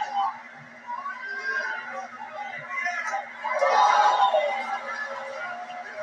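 Voices talking and calling out over a steady low hum, getting louder about four seconds in.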